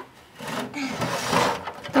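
A hairbrush drawn through a child's long hair right by the microphone: a long rustling, scraping stroke that swells and fades over about a second and a half.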